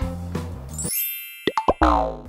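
Background music that drops out about a second in, followed by a short cartoon-style sound effect: two or three quick plops with a falling pitch near the end.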